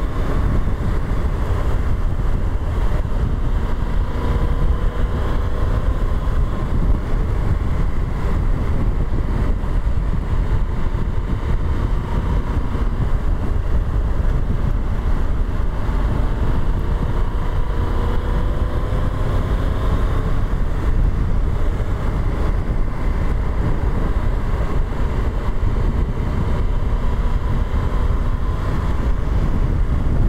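Motorcycle cruising at road speed, its engine note drifting gently up and down under a heavy, steady rumble of wind on the handlebar-mounted camera's microphone.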